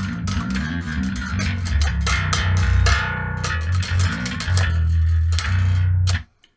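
Electric bass strung with super-heavy-gauge strings in standard tuning, played as a fast riff of rapid, closely spaced notes with a strong low end. The playing stops abruptly at the very end.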